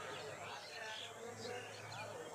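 Faint, indistinct human voices in the background over a low, steady buzz or hum.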